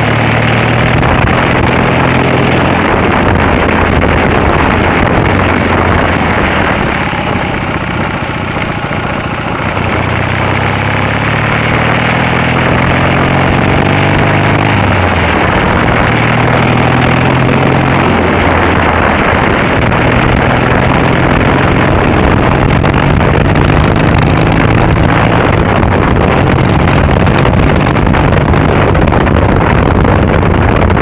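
Triumph Bonneville's parallel-twin engine running under way, heard from on board the bike over a heavy rush of wind and road noise. The engine eases off about seven seconds in, then pulls again, its pitch stepping up and down through the rest of the ride.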